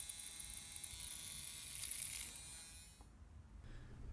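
Small replacement motor for an Atlas Dash 8-40CW HO-scale model locomotive running free on a bench test with a steady high-pitched whine, drawing about 150 milliamps. It cuts off about three seconds in.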